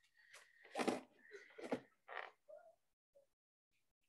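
Faint handling of a cardboard collection box as it is being opened: a squeaky scrape, then rustling and a few soft knocks, dying away about three seconds in.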